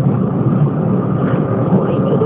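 Steady running rumble of a train in motion, heard from inside the carriage through a phone's microphone.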